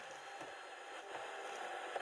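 Hiss of static from the speaker of a 1991 Coca-Cola ice-cooler AM/FM radio as its dial is turned between stations. It opens with a brief click.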